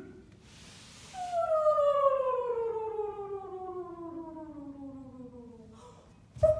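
A performer's voice holding one long note that slides steadily down in pitch for about four and a half seconds and fades near the end, after a short breathy hiss.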